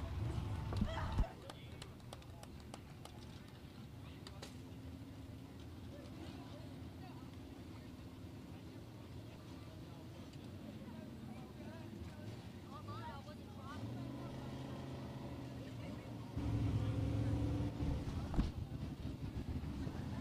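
Faint racetrack ambience: a low engine sound cuts off about a second in, then distant voices, and a steady low engine hum comes in louder for the last few seconds.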